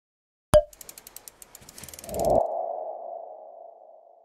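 Logo sting sound effect: a sharp hit about half a second in, a quick run of ticks, then a ringing mid-pitched tone that comes in about two seconds in and fades away.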